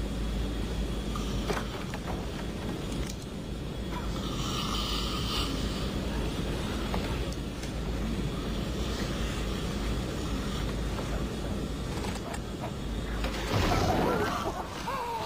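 Steady low vehicle rumble of engine and travel noise, with a brief higher rushing sound about four seconds in and a louder burst of noise near the end.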